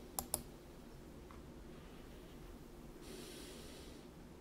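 Two quick clicks of a computer mouse, a fraction of a second apart, then low room tone and a soft breath near the end.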